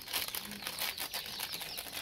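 Small foil sachet crinkling in the hands as it is opened and squeezed over a bowl, a rapid run of small crackles.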